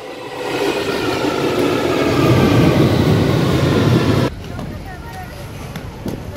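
London Underground Victoria line train rumbling at the platform, growing louder over the first two seconds, with a faint whine above the rumble. It cuts off abruptly about four seconds in, giving way to quieter street noise.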